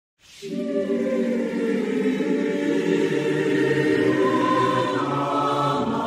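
A choir singing slow, sustained chords. It comes in about a third of a second in and moves to new chords a couple of times.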